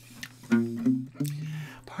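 Acoustic guitar strings sounding briefly: notes start about half a second in, a second set comes in just after a second, and both ring out and fade.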